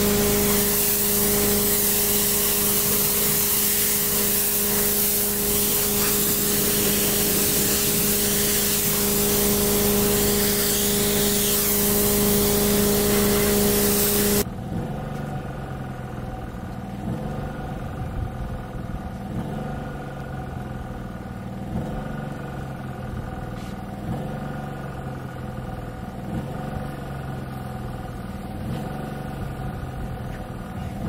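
Pressure washer spraying water with a steady hum, which cuts off abruptly about halfway through. After that, quieter background music with a repeating bass line.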